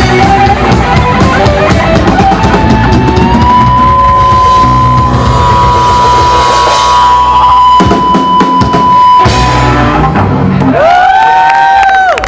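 Punk rock band playing live: drums, electric bass and electric guitars at full volume. A single high guitar note is held for several seconds in the middle, and near the end the guitar tones bend up and down in pitch.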